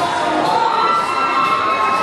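Crowd of spectators cheering and shouting, loud and unbroken, with several voices holding long high calls.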